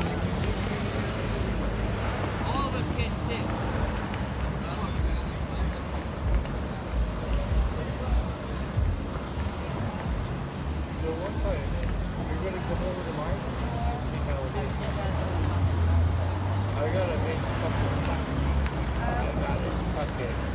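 City street traffic running past in a steady low rumble that swells louder about three-quarters of the way in, with faint, indistinct voices.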